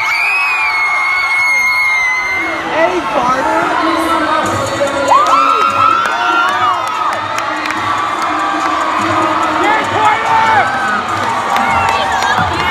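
A large crowd of students in a gymnasium cheering and screaming, with many high-pitched yells overlapping. One long shrill scream holds through the first couple of seconds.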